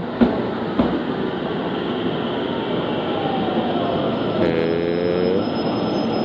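JR Central 313-series electric train running slowly past the platform, its wheels and motors giving a steady rumble. A whine falls gently in pitch around the middle, and a short pitched tone sounds near the end.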